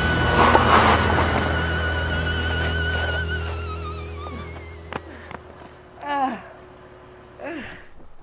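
A pop-rock song's final chord rings on, with wavering high notes, and fades away over the first four seconds or so. A thunk follows about five seconds in, then two short sounds that fall in pitch near the end.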